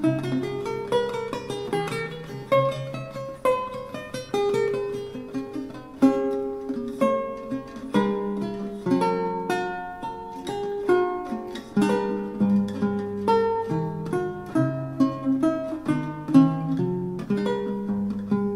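Solo lute played with the fingers: a continuous run of plucked notes and chords in several voices over a moving bass line, each note ringing and fading.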